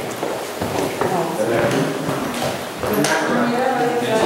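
Indistinct talk of several people in a room, with a couple of sharp knocks, about a second in and near the three-second mark.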